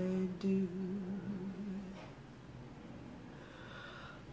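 A woman's unaccompanied voice holding a low, drawn-out note with a slow vibrato at the end of a phrase, fading out about halfway through.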